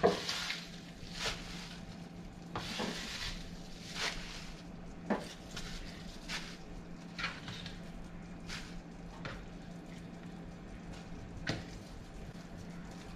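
Handfuls of chopped purple kale and purple carrot strips scooped off a plastic cutting board and dropped into a pan of curry liquid, giving about ten short, irregular rustles and scrapes over a low steady sizzle from the pan.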